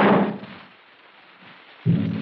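A single sudden blast, a signal-gun shot sound effect, dying away within about half a second. Near the end a steady low sustained note begins.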